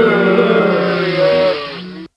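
A prerecorded sound-effect clip played by a V8 live sound card's "despise" effect button: a drawn-out buzzy tone lasting about three seconds that fades slightly toward its end and then cuts off abruptly.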